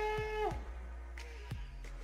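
A woman's long cry on one steady held note, dropping in pitch and cutting off about half a second in, as she reacts to her freshly cut bangs; then only faint room sound with a few soft clicks.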